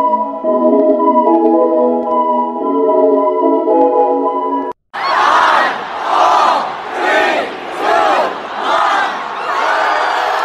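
Background keyboard music with a simple stepped melody. It cuts off abruptly, and after a moment two women scream and shout loudly in repeated bursts, about six in five seconds.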